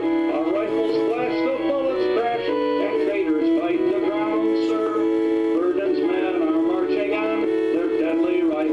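A man singing a Civil War song over instrumental accompaniment.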